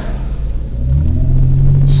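Car engine heard from inside the cabin while driving, its pitch rising as the car speeds up a little under a second in, then holding steady.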